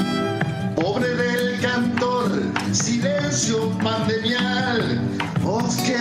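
Argentine folk song: a male singer over guitar and violin. The instruments play alone for the first second or so, then the singing comes in.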